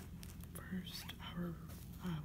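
Soft whispered speech from a woman, with a few light taps and rustles as a paperback book is turned over in the hands.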